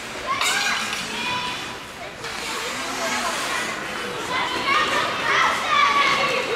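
Children's high-pitched shouts and calls in an ice arena during a youth ringette game, several voices at once, loudest near the end.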